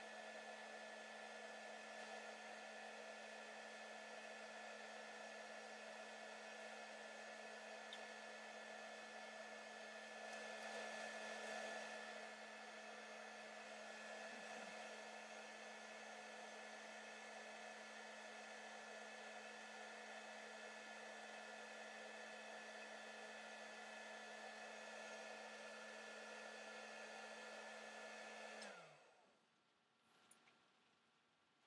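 Handheld heat gun running steadily, a blowing fan noise with a steady motor whine. Near the end it is switched off and its pitch drops as it spins down to silence.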